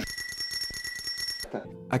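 A steady high ring over a fast rattle, like a small mechanical bell being struck rapidly, lasting about a second and a half and cutting off suddenly. Music starts just after it.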